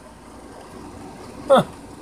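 Steady low background noise with no distinct mechanical sound. A brief spoken "huh" comes about one and a half seconds in.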